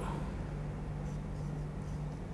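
Pen writing on paper, a faint, irregular scratching of the tip across the sheet, over a steady low hum.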